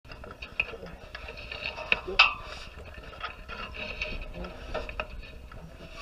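Scattered sharp knocks and clicks from work on a metal launch tower, the loudest a little past two seconds in, over faint distant voices and a low wind rumble on the microphone.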